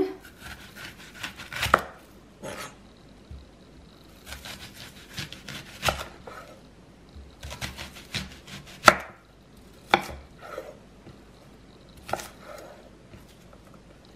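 Chef's knife slicing a red onion on a wooden cutting board: irregular knife strikes against the board, a few sharp knocks among softer cuts, the loudest about nine seconds in.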